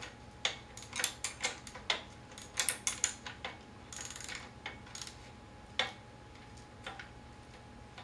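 Irregular light metal clicks and ticks as the bolts of a wheelchair brake clamp are turned and snugged against the frame, with a short scrape about four seconds in.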